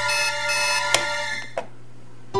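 Electronic alarm of a digital alarm clock sounding, a steady pitched buzz that pulses about twice a second. A sharp click comes about a second in, and the alarm cuts off about one and a half seconds in, followed by another click.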